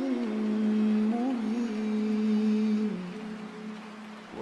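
A male reciter holding one long drawn-out vowel in melodic Qur'an recitation, the pitch steady with small turns. It steps down and fades about three seconds in.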